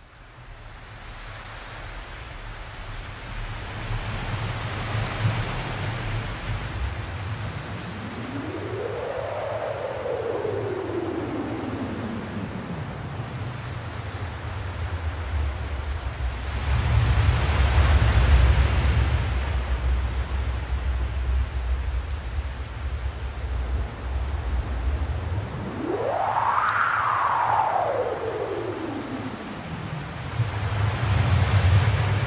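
Ocean surf, a continuous rushing wash with a deep rumble that swells and eases. Twice, once about eight seconds in and again near the end, a single tone slides up and then slowly back down over it.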